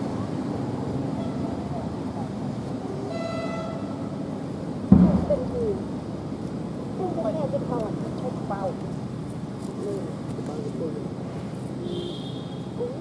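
Steady low engine hum with a brief horn toot about three seconds in and a sudden loud knock about five seconds in, followed by a scatter of short, sliding, high-pitched calls.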